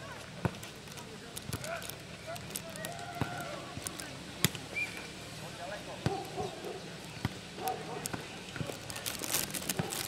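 A footnet ball being kicked, headed and bouncing on a clay court during a rally: sharp thuds every second or so, the loudest about four and a half seconds in. Players' voices and calls sound in the background.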